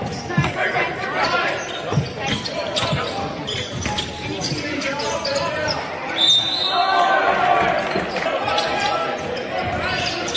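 Indoor basketball game: a ball bouncing repeatedly on a hardwood court, with players' voices and calls echoing in the gym.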